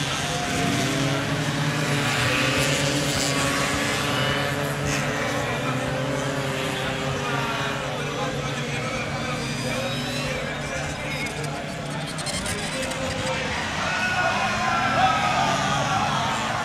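Small racing scooter engines running hard on a circuit, their whine rising and falling in pitch as the riders rev through the corners.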